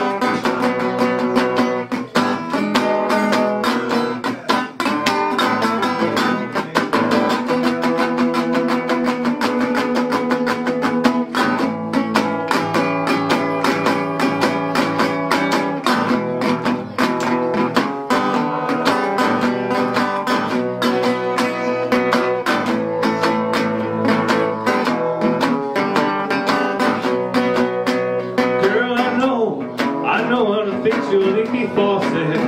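Metal-bodied resonator guitar played solo: a steady, busy blues instrumental break of picked notes and chords.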